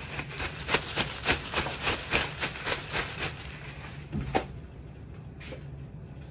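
Large plastic bag rustling and crinkling as it is handled: a quick, irregular run of crinkles that stops about four and a half seconds in.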